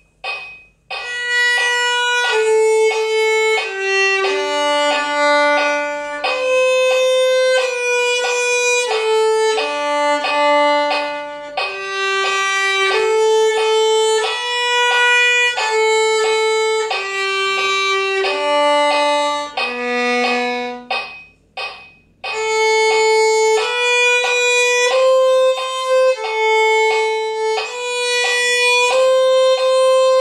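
Solo violin bowing the first violin part of a beginner duet at 90 beats per minute: a single line of even, mostly one-beat notes in the lower-middle range. A few short clicks come before the playing starts about a second in, and the line breaks off briefly about two-thirds of the way through.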